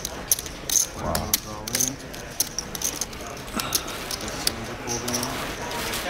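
Clay poker chips clicking together in a player's hand: a quick, irregular run of sharp clicks while he weighs an all-in call, with faint low voices mixed in.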